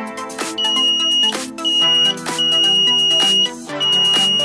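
Small piezo buzzer on a 9-volt battery sounding a steady, high-pitched beep that starts and stops four times, in bursts from about half a second to over a second long, as its switch is closed and opened. Electronic background music plays underneath.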